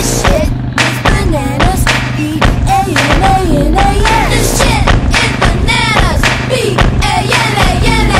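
Background music: a song with a singing voice over a steady beat.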